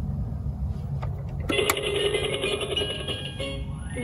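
Low rumble of wind on the microphone; about a second and a half in, a VTech Fly and Learn Airplane toy starts playing an electronic tune with held tones that step in pitch near the end.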